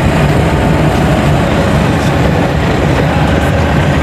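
Loud, steady rumble of engine and road noise heard inside a moving car's cabin.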